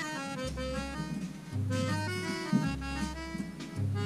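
Background music: a melody of quick notes over a bass line that switches between two low notes about once a second.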